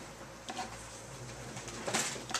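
Marker pen tapping and scratching on a whiteboard as a line of working is written, with two sharp taps, about half a second in and near the end, over a low steady hum.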